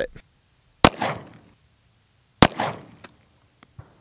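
Two 9mm pistol shots, about a second and a half apart, each followed by a short echo. The rounds are 115-grain full metal jacket and hollow point.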